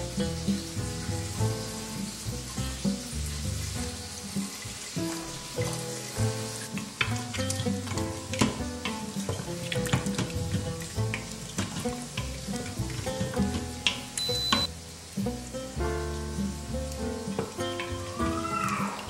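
Chicken sizzling in the steel inner pot of an electric pressure cooker, with scattered clicks and scrapes of a wooden spatula stirring against the pot. Background music plays throughout.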